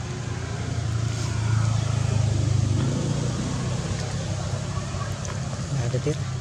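Low, steady rumble of a motor vehicle engine running nearby, growing louder in the middle and then easing off.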